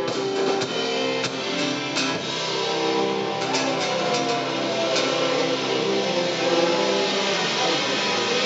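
Live rock band playing with electric guitars and a drum kit. Guitar notes are held and bend in pitch, and drum hits are scattered through.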